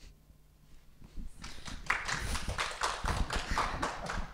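A few people clapping, a quick irregular patter of hand claps that starts about a second in after a short quiet.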